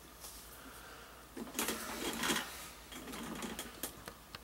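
Orange rubber anti-vibration dampener being worked into the aluminium gimbal plate's mounting hole. Two short spells of faint scraping and rattling handling noise come about a second and a half in and again near the end.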